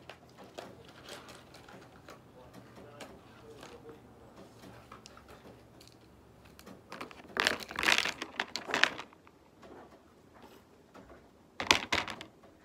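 School supplies and their plastic packaging being handled: soft rustles and small clicks, then a loud spell of crinkling and rustling for about two seconds starting some seven seconds in, and a short sharp rustle near the end.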